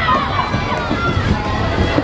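Quad roller skate wheels rumbling on the rink floor as a pack of skaters passes close by, under crowd voices and shouting.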